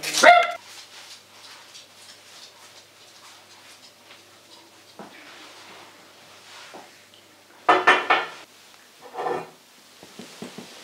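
A small dog barking in short bursts: once right at the start and twice near the end. Between the barks, faint clinks of coffee cups and crockery.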